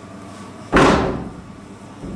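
A single loud bang a little under a second in, fading away within about half a second.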